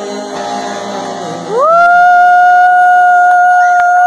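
A live band playing the end of a song, then a single loud note held dead steady for nearly three seconds as the closing note. The note scoops up into pitch about a second and a half in.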